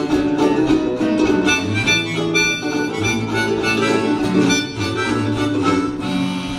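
Instrumental old-time jug band music: a jug blown in low notes over a strummed acoustic guitar, with harmonica.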